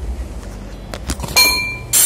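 Metal kitchenware clanging: a couple of light clicks, then a sharp metal strike about one and a half seconds in that rings with a clear tone, and a second strike at the end.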